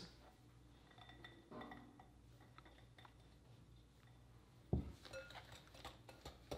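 Mostly near silence, with faint clinks of a wire whisk and glass mixing bowls. A sharper knock comes near the end, followed by a few more light clinks.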